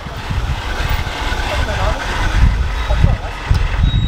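City street noise: a continuous low rumble with faint voices of passers-by.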